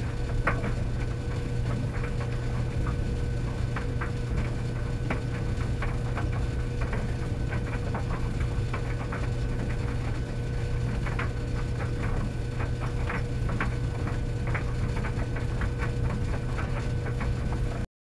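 Commercial stacked tumble dryers running: a steady low motor-and-drum hum with a faint steady whine, and irregular light clicks and taps from the load tumbling in the drum. The sound cuts off suddenly near the end.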